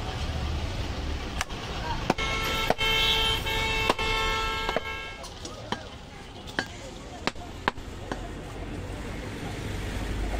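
Cleaver chopping a goat leg, about nine sharp strokes at uneven intervals. A vehicle horn sounds steadily for about three seconds from about two seconds in, over street traffic noise.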